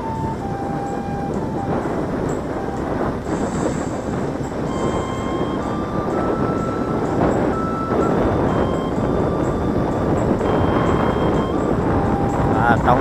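Steady noise of a vehicle moving along a road: engine, tyres and wind rushing on the microphone. Faint background music rides over it, a thin tune of held notes changing pitch every second or so.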